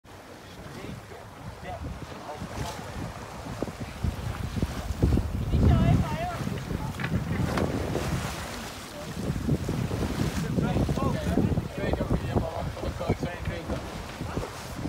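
Wind buffeting the microphone on a sailing yacht under way, with water rushing along the hull in a choppy sea; the gusts swell about five seconds in and again about ten seconds in.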